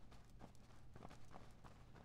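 Faint, irregular footsteps of several people walking across a hard hall floor, over a low steady hum.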